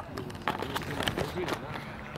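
Indistinct voices of people on and around an outdoor playing field, with a few scattered sharp knocks.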